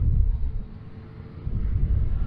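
Outdoor wind buffeting the microphone in gusts, a low rumble that eases off about half a second in and picks up again near the end, under a faint steady hum.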